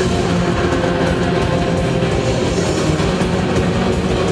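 Live metal band playing loud: heavily distorted guitars held in a dense, steady wall of sound, with drums and cymbals underneath.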